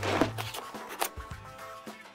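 Background music with steady bass notes, over plastic bags of Lego pieces rustling and sliding out of a cardboard box onto a table, with a sharp click about a second in.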